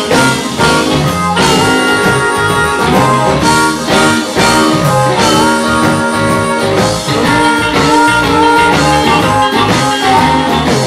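Live blues-rock band: an amplified harmonica, played cupped against a hand-held microphone, leads with sustained, bending notes over two electric guitars, bass and a drum kit.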